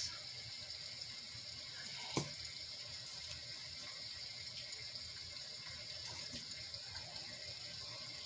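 Sound machine playing a rain sound: a steady hiss. A single light knock comes about two seconds in.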